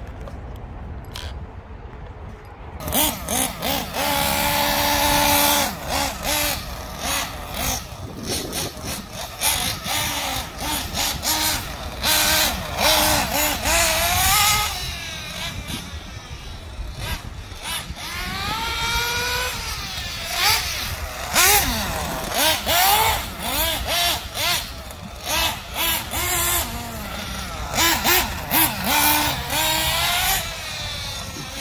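Small nitro glow engine of an RC buggy, quieter for the first few seconds, then revving up and down over and over in high-pitched rising and falling whines as the car is driven.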